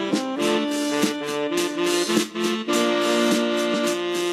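A small jazz band playing live: saxophones and a keytar hold chords over steady drum and cymbal strokes.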